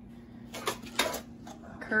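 A few light clicks and knocks of objects being handled, over a faint steady hum; a woman starts speaking near the end.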